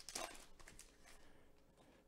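Near silence, with a faint rustle of a foil card-pack wrapper in the first half second as cards are slid out.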